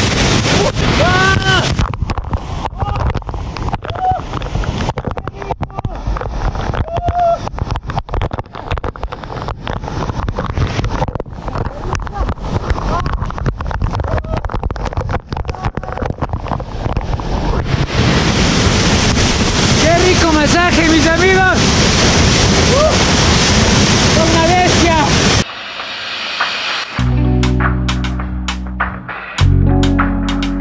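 A waterfall pouring directly onto a man and his action camera: a loud, continuous rush of falling water with splashing, muffled for much of the middle stretch as water covers the microphone. Short wordless vocal gasps and cries sound now and then. Near the end the water sound cuts off and guitar music begins.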